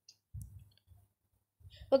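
Computer mouse clicks: a short sharp click, then a soft low thump about half a second in. A woman starts speaking near the end.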